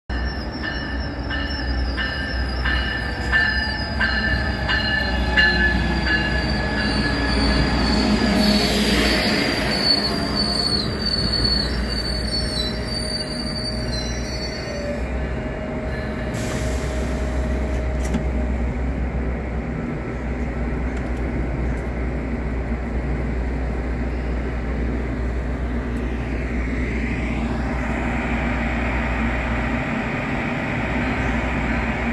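Bilevel commuter train pulling into a station platform, its wheels squealing in several high, steady tones as it brakes, with a few light wheel clicks. The squeal dies away about halfway through, leaving a steady low hum from the standing train.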